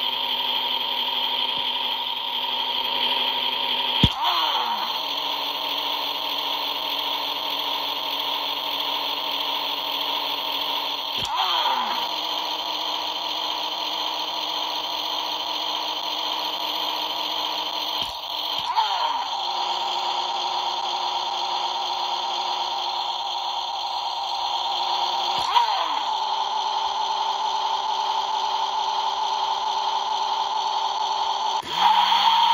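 Electronic engine sound from a Shake 'N Go Jeff Gorvette toy car's small built-in speaker. It is a steady buzzing hum, broken about every seven seconds by a click and a quick downward swoop in pitch.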